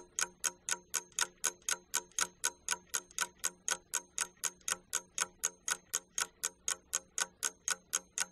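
Clock-ticking sound effect, a steady run of sharp ticks at about four to five a second, counting down the time given for a classroom task.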